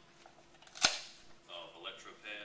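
A single sharp snap of a fastener on an AED's soft carrying case as it is opened, less than a second in.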